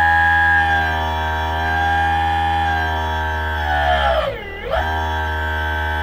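Brushless electric motor driven by a VESC-based PV 24F controller, spinning at full throttle with a steady whine made of several tones, with the controller's max-torque-per-amp current injection active. About four and a half seconds in, the pitch briefly sags and climbs back as the throttle is eased and reapplied.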